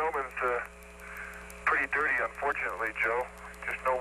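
An Apollo astronaut's voice over the lunar-surface radio link, thin and band-limited, reporting that the gnomon is dirty, in three short bursts. A steady hum runs underneath, with a faint rapid ticking.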